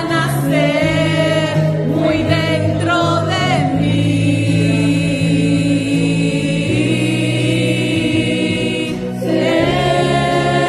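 A group of women singing a worship song together over a sustained accompaniment. The sung phrases give way to one long held note from about four seconds in, and the singing picks up again near the end.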